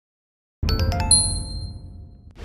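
Short logo sting: a few quick chime notes over a low rumble, starting just over half a second in and ending on a bright ding that rings on and fades.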